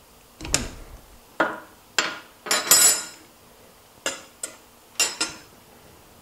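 Steel arbor wrenches clanking against a SawStop table saw's arbor nut and metal table top as the blade's arbor nut is loosened and the wrenches are laid down. There are about seven sharp metallic clanks, the loudest cluster a little before halfway.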